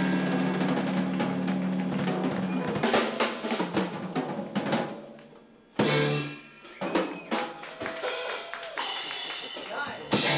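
Live band of electric guitar, bass guitar and drum kit holding a chord for about three seconds, then a run of drum kit hits and fills with short stabs from the band.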